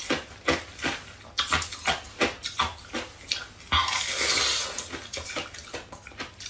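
Close-up chewing and crunching of thin sheets of pink-coloured ice: a quick run of sharp, brittle crackles, with a longer, denser burst of crunching about four seconds in.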